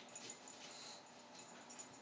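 Near silence: room tone, with a few faint, soft sounds of a dog settling down onto a floor mat.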